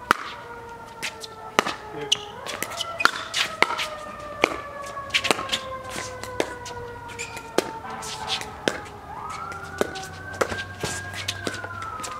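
Pickleball rally: sharp pops of paddles striking the plastic ball, one to two a second. Behind them a siren wails, its pitch slowly rising and falling.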